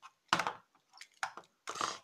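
Hands handling small toy figures on a tabletop: a few short scuffs and crinkles, the longest near the end.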